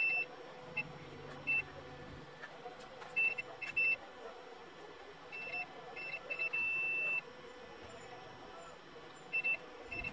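A multimeter's continuity beeper gives irregular short, high beeps, with one longer beep near the middle, as the probes are touched across the fine traces of a water-damaged TV panel's COF flex connection. Each beep marks a connected line. The gaps go with lines that are broken.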